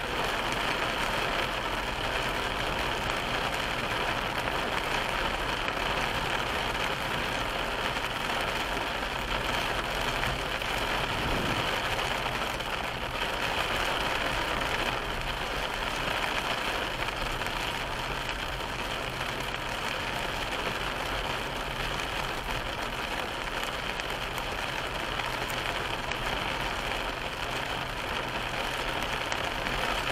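Car driving at about 30 mph on a wet road, heard from inside the cabin: a steady hiss of tyres on the wet road over the engine's low hum.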